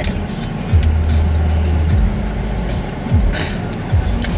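Music with a deep bass line whose notes slide down about every second, heard over the steady road and engine noise of a moving car.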